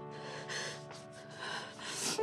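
Soft, sad background music on a held chord, with several short sobbing breaths from someone crying.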